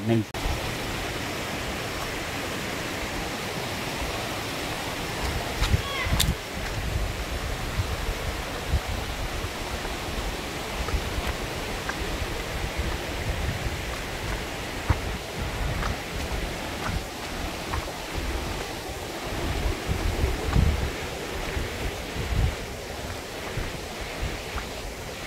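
Rocky jungle stream rushing over stones, a steady hiss of running water, with irregular low rumbles of wind and handling on the microphone.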